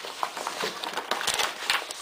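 Paper rustling and crinkling in irregular short strokes as a child unfolds a large folded sheet.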